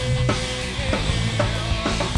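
A live rock band playing, with drum kit hits about twice a second over guitar and bass.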